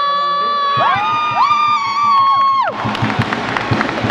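Several long, overlapping horn blasts in a gym crowd: one steady tone, with others sliding up in pitch to join it, all cutting off with a falling slide about two and a half seconds in. After that, crowd noise and the repeated thuds of a basketball being dribbled on the court floor.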